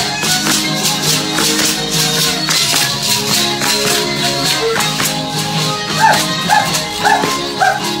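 Traditional dance music for a danza autóctona: a sustained melody over a steady beat of shaken rattles. From about six seconds in a dog barks four times, about twice a second.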